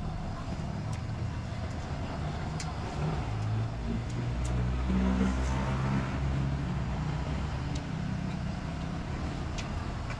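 Road traffic: a motor vehicle's engine running close by, swelling louder through the middle and easing off again, with a few faint clicks.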